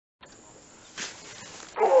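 A man's drawn-out exclamation "oh", falling in pitch, near the end, over faint background noise with a short click about halfway.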